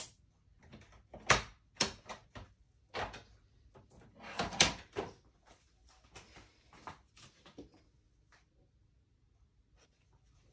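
Off-camera rummaging through craft supplies: a string of irregular knocks, clicks and rustles as things are moved and picked up, the loudest about a second and a half and four and a half seconds in, dying away near the end.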